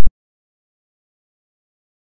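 Digital silence: the soundtrack cuts off abruptly at the very start and nothing is heard after that.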